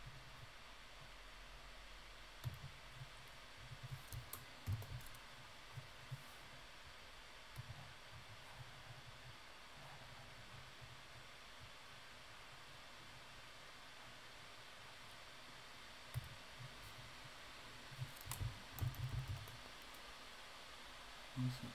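Faint, scattered clicks of a computer mouse and keyboard, some with a soft low thump, over quiet room hiss. The clicks come in small clusters, most thickly about two to five seconds in and again near the end.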